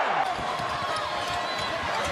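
Crowd noise in a basketball arena, with a basketball being dribbled on the hardwood court.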